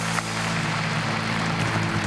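Studio audience applauding over a held musical chord.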